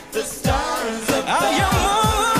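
Pop song performed by a mixed vocal group, the singers over a band with a steady drum beat. The music drops away briefly at the start, then the beat comes back in, and the voices rejoin about a second in.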